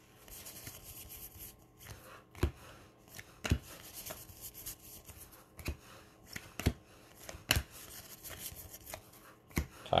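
A stack of baseball trading cards being handled: cards slid and flipped over one another with a soft rustle, and a few sharp clicks as card edges snap past each other.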